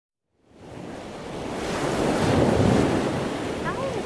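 A loud rushing noise, even across low and high pitches, like surf or wind. It fades in about half a second in, swells to its loudest about halfway through and cuts off suddenly at the end.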